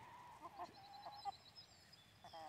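Faint clucking of free-ranging hens: a few short, soft calls scattered through the first second and a half.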